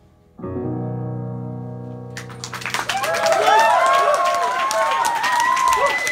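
Upright piano's final low chord struck about half a second in and left to ring and fade. About two seconds later an audience breaks into loud applause with cheering and whistling.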